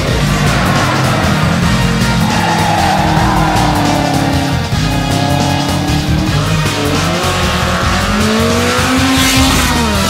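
Rally cars at full throttle, engines revving up and dropping back through gear changes, with tyres squealing as a car slides through a corner. Background music plays underneath.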